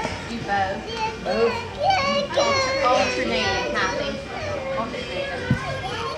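A young child laughing and babbling in a high voice during a playful hand game, with other voices in the room, and one sharp tap near the end.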